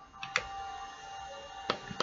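Buttons of a small digital scale being pressed while its weighing mode is changed: two light clicks about a second and a half apart, over a faint steady tone.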